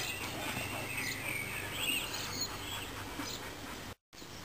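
Birds chirping, with short gliding calls, over steady outdoor background noise and a low hum.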